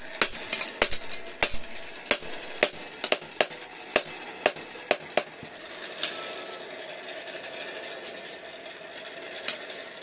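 Hand hammer striking a steel sickle blade on a small anvil: sharp metallic blows at about two a second for the first five seconds, a lull of about three seconds, then two more blows near the end.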